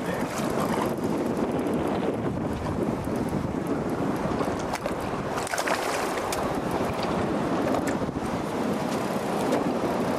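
Wind buffeting the microphone over choppy open water, with waves washing against a small fishing boat's hull. A few short, sharp sounds cut through near the middle.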